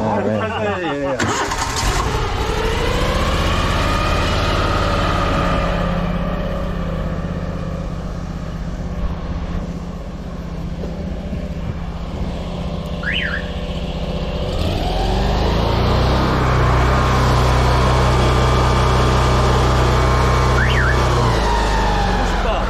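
Engine-driven high-pressure sewer jetter running. Its engine note dips around ten seconds in, then rises and holds higher from about fifteen seconds as the jet sprays from the hose nozzle. The unit runs without labouring, which the operator takes as the engine being barely loaded by the pump.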